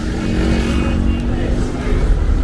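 A small motorcycle's engine running at a steady pitch as it rides past close by, over the noise of street traffic.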